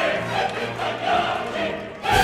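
Opera chorus singing full-voiced over the orchestra. The sound dips briefly just before the end.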